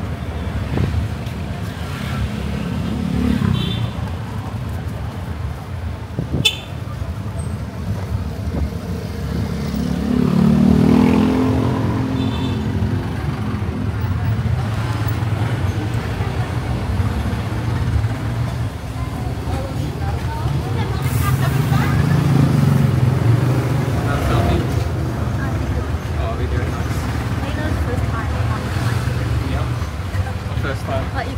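Motorised tricycle ride heard from inside the sidecar: the motor runs steadily with road noise, its pitch rising as it picks up speed about ten seconds in and again later.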